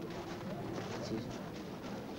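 Low outdoor background of indistinct voices, with a bird calling softly.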